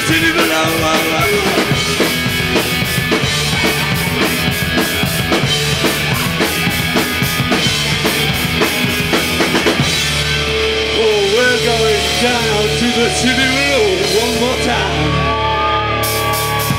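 Punk band playing live: drum kit, distorted electric guitars and bass. About ten seconds in the drumming stops, leaving held guitar chords ringing under a wavering lead line.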